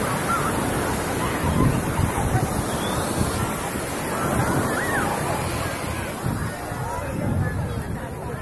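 Sea surf breaking and washing over the shallows of a sandy beach, a steady rushing wash, with wind buffeting the phone's microphone.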